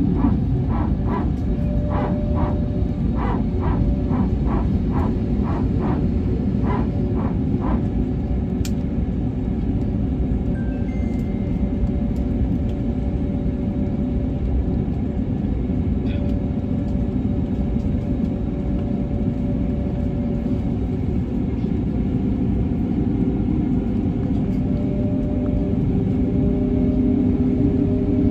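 Airbus A320-family airliner cabin: a steady low rumble from the jet engines as the aircraft taxis. Background music with a run of short repeated notes in the first eight seconds plays over it.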